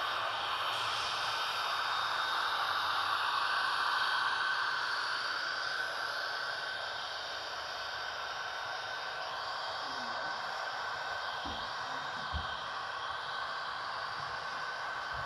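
HO scale model freight train running past on the layout track: a steady whirring hiss of the locomotives and cars rolling by, a little louder over the first few seconds as the diesel locomotives pass close.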